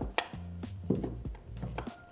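Wooden puzzle blocks clicking and knocking lightly against each other and against the small wooden tray as they are pressed and slid into place, a few times, over soft background music.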